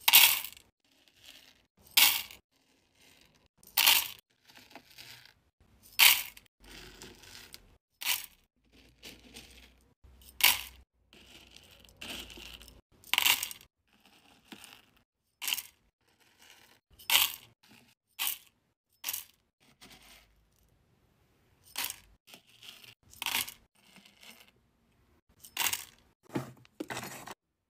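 Hard-wax beads scooped with a metal spoon and tipped into the metal pot of a wax warmer, clattering in a dozen or so short rattles one to two seconds apart, with quieter scraping of the spoon through the beads between them.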